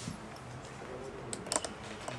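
A few light, sharp clicks over quiet room noise, grouped about one and a half seconds in.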